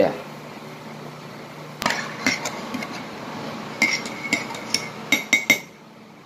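Metal spoon clinking against ceramic dishes while eating: a run of sharp clinks, each with a short ring, starting about two seconds in and coming fastest in the last two seconds.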